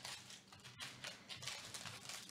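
Faint crinkling and a few light taps as sealed foil trading-card packs are picked up and handled.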